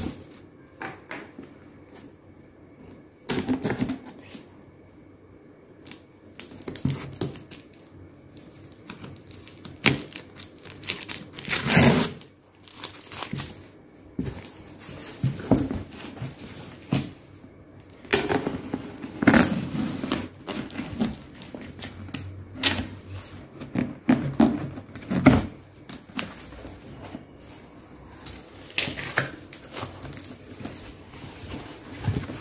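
Cardboard shipping box being opened by hand: irregular bursts of rustling, scraping and tearing of cardboard and packing tape.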